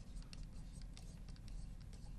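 Faint scratching and small ticks of a stylus writing on an interactive touchscreen display, over a steady low hum.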